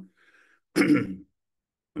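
A man clearing his throat once, a single short burst about three quarters of a second in.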